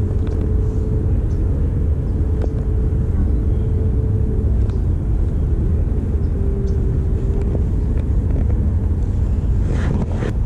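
Steady low rumble with a few faint ticks, and a short burst of scuffing noise near the end.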